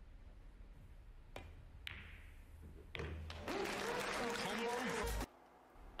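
A pool cue strikes the cue ball and, about half a second later, balls click together; this is a combination shot on the 9-ball. About three seconds in, the arena crowd applauds with a commentator speaking over it, and the sound cuts off abruptly shortly before the end.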